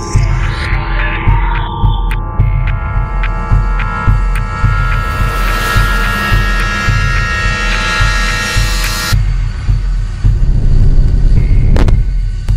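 Dark, eerie intro soundtrack: a deep throbbing pulse like a heartbeat under sustained drone tones. A hissing swell builds over several seconds and cuts off abruptly about nine seconds in.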